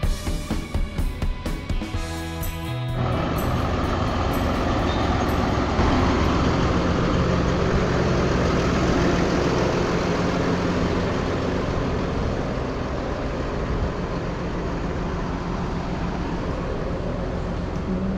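Background music for about three seconds, then a tractor's diesel engine running steadily close by, a continuous low hum under a wide steady noise.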